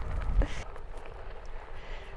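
Low, steady rumble of wind and movement on the microphone while riding along a dirt trail, with a faint click about half a second in.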